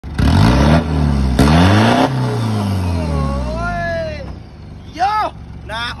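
Isuzu D-Max 2.5-litre four-cylinder turbodiesel free-revved hard in neutral, blipped three times in quick succession up to the rev limiter. The revs then fall away over about two seconds, with a wavering whistle-like tone as the engine winds down.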